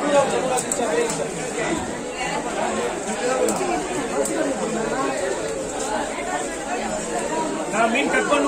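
Busy market chatter: several voices talking over one another. A few light knocks of a cleaver on a wooden chopping block sound faintly beneath it.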